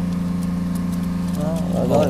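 Steady low motor drone from pond machinery, typical of a shrimp-pond aerator running, with faint water drips as a feeding tray is pulled up from the water.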